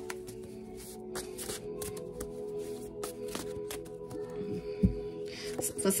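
Cards being shuffled and handled by hand: a scatter of soft paper flicks and taps, with one dull thump near the end. Steady ambient background music runs underneath.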